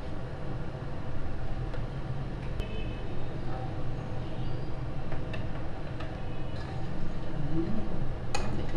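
A pot of hotpot broth at a full boil on a tabletop gas burner: a steady low rumble. A few light clinks of metal ladles against the pot come as the foam and onion are skimmed off.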